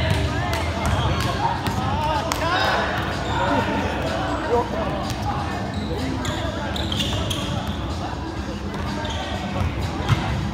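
Volleyball game in a reverberant gym: players' voices calling and chattering, several sharp thumps of the ball being hit and striking the hardwood floor, and a few short high squeaks of sneakers on the court.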